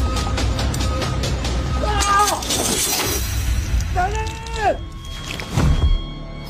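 Action film soundtrack: music with a quick, even percussive beat, two drawn-out shouted cries about two and four seconds in, and a sudden hit just before the end.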